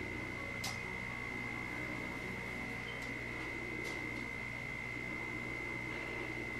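Room tone: a steady high-pitched electrical whine over a low hum, with a couple of faint clicks.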